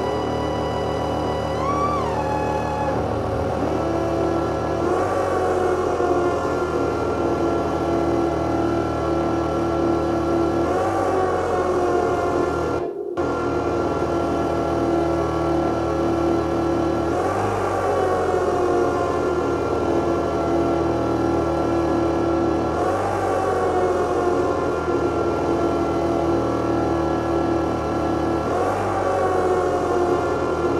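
Live electronic drone music played on a tabletop of electronics: dense sustained tones, with a swelling sweep that bends down in pitch about every six seconds. The sound cuts out for an instant about 13 seconds in.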